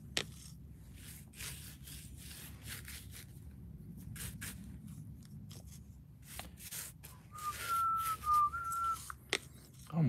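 Bristle paintbrush scrubbing paint into rough textured foam in short, irregular scratchy strokes. Near the end a person whistles a few notes for about two seconds.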